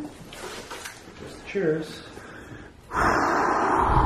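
A person's voice: a brief wordless vocal sound, then about three seconds in a louder, long breathy exhale or gasp lasting over a second.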